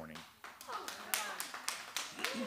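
A few scattered handclaps from a church congregation, irregular and spread over about a second, with faint voices under them.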